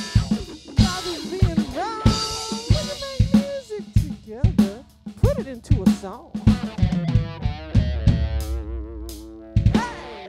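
Rock band instrumental passage: an electric guitar lead with bent notes over a drum-kit beat, ending in a long held, wavering note over a low sustained bass note that breaks off just before the end.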